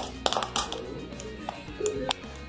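Background music, with a quick cluster of sharp metallic clicks early on and a few single clicks later: a Glock pistol's slide being worked by hand over a cartridge at the feed ramp, checking a ramp defect that stops the round from feeding.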